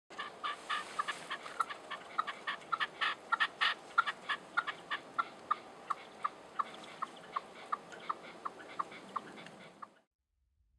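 Red-legged partridge calling: a rapid series of short, sharp calls, crowded and overlapping at first, then settling into an even run of about three a second before stopping.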